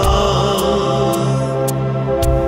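Two male voices singing in harmony over a sustained instrumental backing, holding a long note with vibrato.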